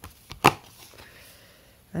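Cardboard oracle cards being handled: one sharp snap of card against card about half a second in, then faint handling noise.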